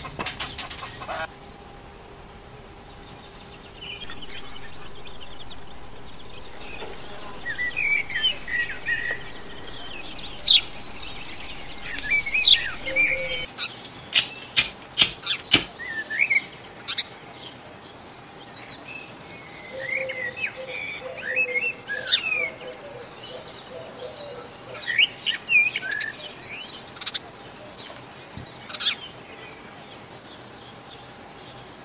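Small birds chirping and singing in short gliding phrases throughout. A sharp snip comes right at the start as side cutters cut through a small metal tube, and a quick run of sharp clicks about halfway through comes as a lighter is struck.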